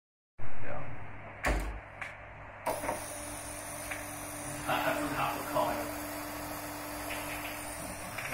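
A small 24 V, 48 rpm DC gear motor running with a steady thin whine and hiss, starting about two and a half seconds in after a few clicks. It is preceded by a loud knock at the very start, and faint voices come through in the background.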